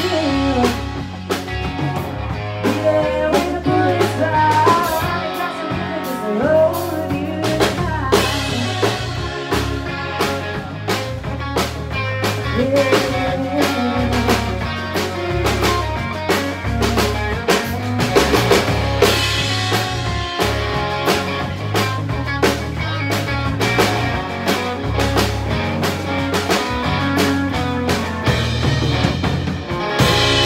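Live rock band playing: electric guitar lines over bass and a drum kit, the drums beating steadily.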